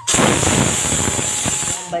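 Pressure cooker whistle blowing off steam: a loud hiss that starts suddenly and cuts off after nearly two seconds. It is the sign that the cooker has come up to pressure and the greens inside are cooked.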